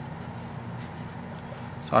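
A Sharpie felt-tip marker writing on paper: faint, scratchy strokes as figures are written out.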